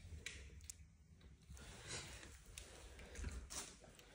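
Quiet handling noise: a few light clicks and rustles as a plastic wall thermostat is lifted over its cardboard box.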